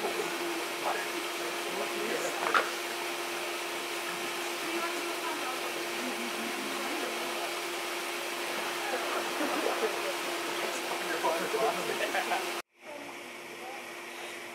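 Outdoor swimming-pool background: a steady low hum with a rushing noise, under faint distant chatter of swimmers. Near the end it cuts off suddenly, giving way to a quieter background and a short laugh.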